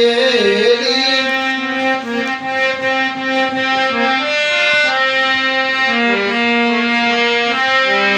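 Harmonium playing an instrumental melody line between sung verses of a bhajan: reedy, sustained notes that step from one pitch to the next every half second or so, over a steadily held lower note.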